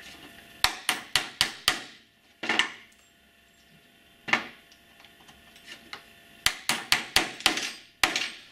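Small hammer tapping pins into the back of a holster insert block: a quick run of about five light taps, a couple of handling knocks, then a second quick run of about six taps near the end.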